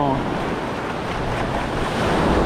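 Small surf waves washing in and out around the pier pilings and over the wet sand, a steady wash of water.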